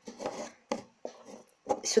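Hands lifting the top section off a two-part perfume bottle: light rubbing and handling noise, then two short clicks about a second in.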